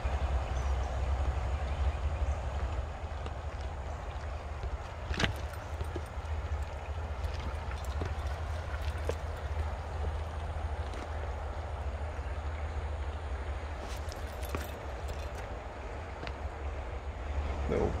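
Shallow river rushing over rocks, a steady splashing hiss, over a steady low rumble, with a few faint clicks.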